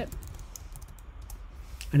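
Computer keyboard keys tapped in a short run of faint clicks as a short command is typed, with a few more taps near the end.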